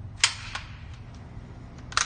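Sharp clicks and knocks from handling a short-barrelled Ruger 10/22 rifle: a loud one about a quarter second in, a softer one just after, a few faint ticks, and another loud one at the very end.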